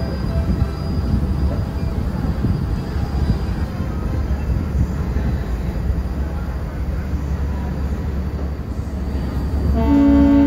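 Steady low rumble of a ferry boat's engine under way, with wind and water noise over the open deck. Near the end the ferry's horn starts to blow, a loud steady chord of several tones.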